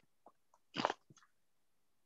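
A few faint clicks and a short burst of noise, under a second long, picked up by a participant's open microphone on a video call, then cut to silence.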